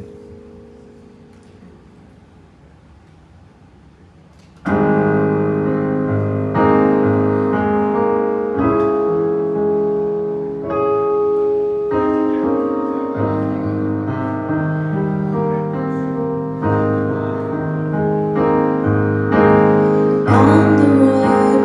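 Electronic keyboard played with a piano sound: after a few seconds of quiet, a chord is struck about five seconds in, and the player goes on with slow, held chords that change every second or two, the introduction to a song.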